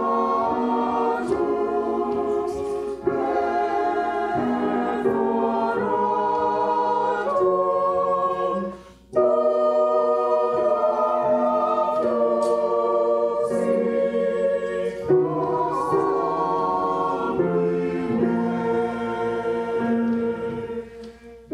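Church choir singing in parts, held chords moving every second or so, with a brief break between phrases about eight and a half seconds in.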